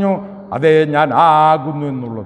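A man preaching in Malayalam, his voice drawing out long vowels at a level pitch, almost chanted.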